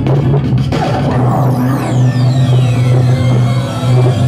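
A live DJ routine played on two turntables and a mixer. The music has a steady deep bass, and starting about a second in, a high sweep falls in pitch over about two seconds.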